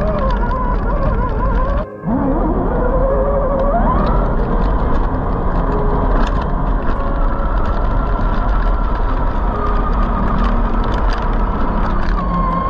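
Electric motor and gearbox whine of a scale RC rock crawler heard from a camera riding on it, the pitch rising and falling with throttle; after a brief drop-out about two seconds in it climbs from low to high and then holds a steadier high whine. Scattered clicks and knocks from the tyres on rocks and gravel run under it.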